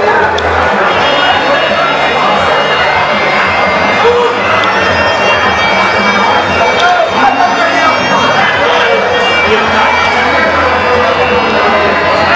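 Traditional Muay Thai ring music (sarama): a reedy Thai oboe (pi java) playing a wavering melody over a steady drum beat, the music that accompanies the fighters' pre-fight ritual, with crowd noise behind it.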